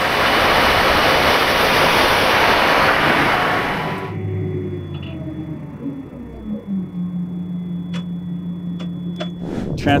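Seeding rig working through the field: a loud even rushing noise for about four seconds, then it cuts to the quieter steady low hum of the John Deere 9510R tractor heard inside its cab, stepping up in pitch a couple of seconds later, with a faint high steady tone and a few light clicks.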